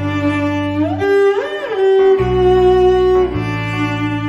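Cello playing a slow bowed melody over held low notes, with a slide up to a higher note and back down about a second and a half in.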